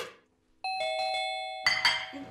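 Doorbell chiming a two-note ding-dong. The first note starts about half a second in and the second follows about a second later. A single sharp hit opens the sound.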